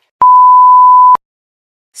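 A single loud, steady electronic beep tone lasting about a second, one pure pitch that starts and stops abruptly.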